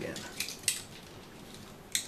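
A few light, sharp clicks and ticks of twisted-pair network cable wires being handled and pressed by hand into a patch panel's termination slots. The loudest tick comes just before the end.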